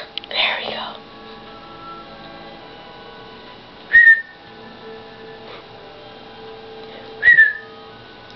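Two short, high whistle-like squeaks, one about four seconds in and one about three seconds later, each starting sharply and dipping slightly in pitch. There is a brief breathy rustle near the start.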